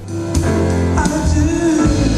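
Live concert music from a band, with deep held bass notes under a melody.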